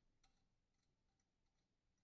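Near silence, with a few very faint ticks.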